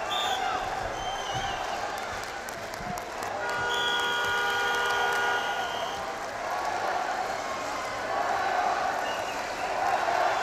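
Arena crowd noise, and about three and a half seconds in an electronic buzzer sounds one steady tone for about two seconds: the signal that time has run out and the wrestling bout is over.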